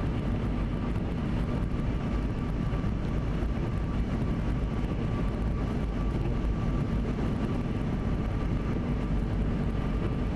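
Steady road noise of a car driving along a wet highway: tyre roar on the wet pavement and engine hum, with a faint steady high whine, heard from inside the car.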